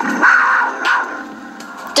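A short, harsh animal snarl, loudest in the first second and then fading, over quiet background music.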